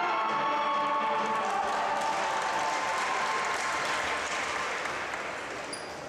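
Music tails off in the first second or two while an audience applauds; the applause then slowly dies down.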